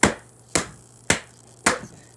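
Children's picture books smacked together in a mock fight: four sharp slaps in a steady beat, about half a second apart.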